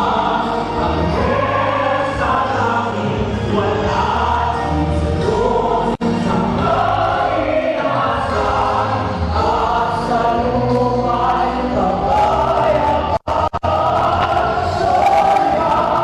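A male lead singer and a mixed group of backing singers sing a song together over instrumental accompaniment, performed live into microphones. The sound drops out for an instant twice, about six seconds in and again around thirteen seconds.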